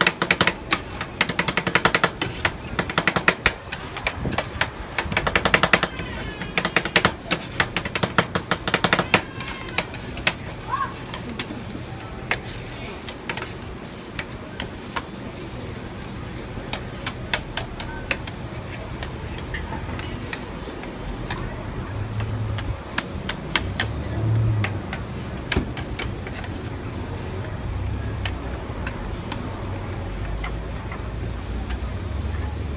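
Metal spatulas chopping and tapping on a steel ice-cream cold plate as rolled-ice-cream mix is worked: a fast clatter of clicks for the first nine seconds or so, then slower, scattered taps and scraping.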